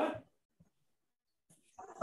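A brief voice fragment at the very start, the tail of a spoken word over the video call, then silence.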